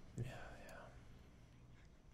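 A man says a short "yeah", followed by a faint, whisper-like voice and then near silence.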